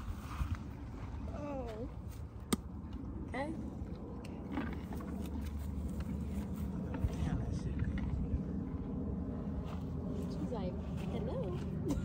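Faint, brief bits of people's voices over a steady low rumble, with one sharp click about two and a half seconds in.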